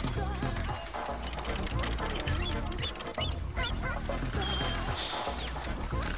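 Background music with a repeating bass line throughout, with wavering, warbling pitched lines and short high glides over it.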